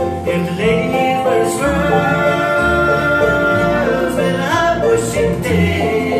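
Live bluegrass band playing a slow song: men singing long held notes over banjo, mandolin, acoustic guitar, upright bass and dobro.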